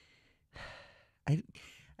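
A man's audible sighing exhale, then a single spoken "I" and another breath, as he hesitates mid-sentence searching for a word.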